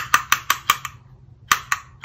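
A handheld plastic butterfly paper punch being handled and jiggled: a quick run of light, sharp plastic clicks, about five in the first second, then two more about halfway through.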